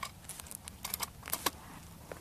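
A quick run of light clicks and taps, about seven in a second and a half, from a bolt-action rifle being handled between shots.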